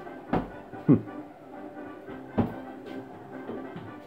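Kicks and punches landing on a hanging heavy kick bag: three thuds, about a third of a second in, about a second in, and near two and a half seconds, with background music playing faintly.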